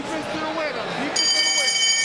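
Boxing ring bell ringing from about a second in, a steady, high, multi-toned ring marking the start of a round, with voices in the arena.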